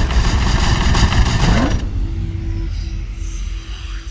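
Intro sound effects for an animated logo reveal: a loud, dense rush with a rising sweep that drops away about two seconds in, leaving a low rumble and a faint steady hum tone as the logo settles.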